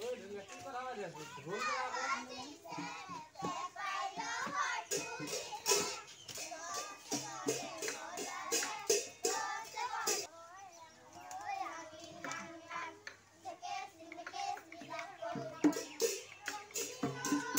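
Group of children singing a Bihu song together, with sharp dhol drum beats coming thickest through the middle stretch.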